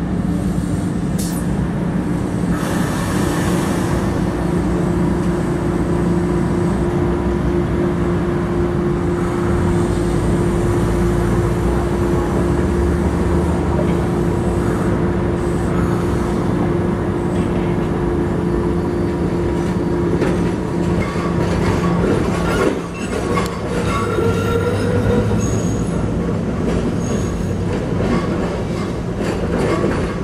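SEPTA Kawasaki light-rail trolley running on street track: a steady motor hum with wheel and rail noise throughout. In the last several seconds it clicks over the rail joints, with brief wheel squeals.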